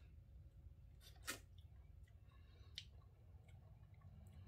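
Near silence, with a few faint mouth clicks of someone tasting a slice of pickled lime, the clearest a little over a second in and another near three seconds.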